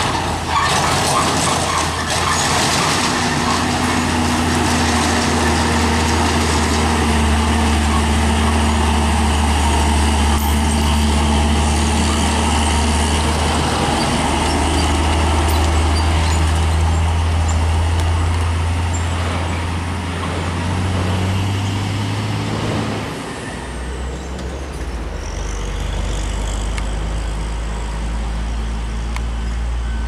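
Heavy diesel trucks passing close and pulling away, their engines running with a steady low drone. About three quarters of the way through, the engine note steps up briefly, then drops to a lower drone as the truck moves off.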